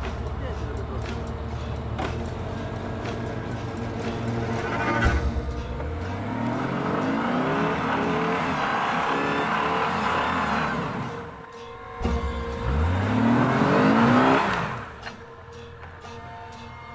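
Jeep XJ engine idling, then revved hard twice, each rev rising and then falling away, as the tyres spin in deep mud and throw it out: the Jeep is stuck in the rut.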